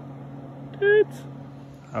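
A steady low mechanical hum, like an engine running some way off, which stops near the end. About a second in, a short flat-pitched voice-like hum sounds once, louder than the rest.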